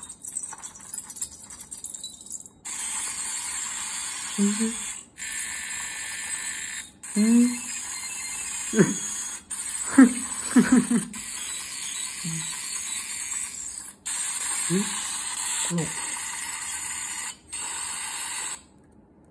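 Lenovo ThinkPad laptop's speakers putting out a harsh, scream-like hissing glitch noise that cuts in and out abruptly several times. It is an audio-output fault while the machine hangs under full CPU and disk load, not a fan or drive noise: muting the sound makes it go away.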